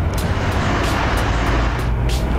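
Steady low rumble of running vehicles, an even wash of engine and road noise.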